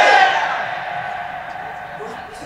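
A man's long, drawn-out shout through a loudspeaker system ends just after the start, followed by a low crowd sound that slowly fades.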